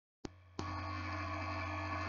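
Two sharp clicks a third of a second apart as the recording starts, then a steady low electrical hum with a buzzy edge, mains hum picked up by the recording setup.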